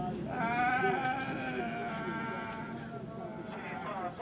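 A baby crying in long, wavering wails on an old black-and-white film soundtrack, growing fainter toward the end.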